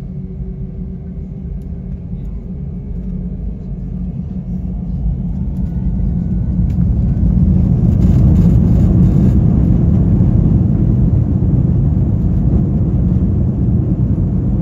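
Airbus A320 jet engines heard inside the cabin, a low rumble that builds steadily over the first several seconds as the engines spool up for the takeoff roll, then holds loud and steady.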